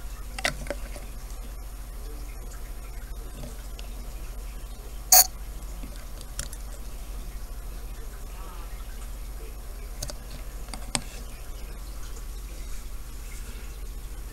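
Steady low electrical hum under a quiet background, broken by a few faint taps and clicks, with one sharp click about five seconds in and two smaller ones near ten and eleven seconds.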